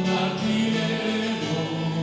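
Church music: a group of voices singing a hymn in long held notes.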